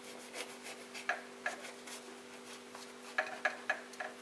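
Kitchen knife sawing through a baked bread roll with a browned crust, a series of short, irregular strokes as it is cut open. A faint steady hum runs underneath.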